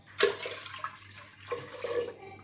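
Water being poured into a pressure cooker of rice and milk, starting with a sudden splash about a quarter second in and running on as a steady pour.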